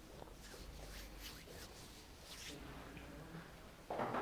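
Quiet room with a low steady hum and a few faint, brief rustles and small handling noises.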